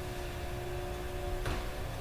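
Room tone: a steady low hum with a few faint constant tones, and a single short click about one and a half seconds in.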